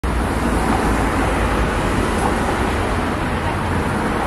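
City road traffic: a steady rumble of passing vehicles with a deep low end.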